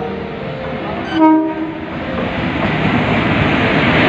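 Electric passenger train approaching a platform, its locomotive sounding one short horn blast about a second in, then a steadily rising rumble as the train draws close.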